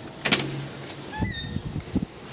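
Glass-and-metal building entrance door being opened: a sharp clack of the latch, then a brief squeak rising in pitch as the door swings, with a few low thuds.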